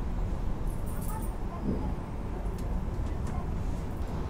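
Steady low rumble of room noise with faint, indistinct voices and a few light clicks.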